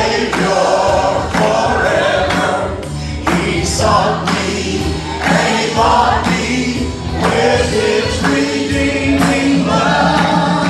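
Live gospel music: a choir singing, led by a man on a microphone, over a band with bass guitar.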